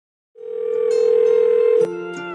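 Telephone dial tone: a steady electronic tone with a lower hum beneath it, starting after a brief silence and changing pitch just before the end.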